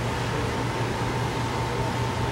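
Steady mechanical hum and hiss of machine-shop background noise, with a constant whine held on one note throughout.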